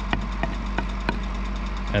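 A rubber mallet knocking four times, about three blows a second, on the edge of a wooden wedge block to squash its fibres down so the slightly too-tight wedge will go in. A steady low hum runs underneath.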